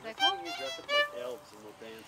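Fiddle bowed briefly: a few short notes, each a clear pitched tone, as a quick snatch of a tune that stops before the end.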